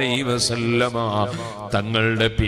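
A man chanting an Islamic devotional invocation, salawat on the Prophet, in long, drawn-out melodic phrases with held notes.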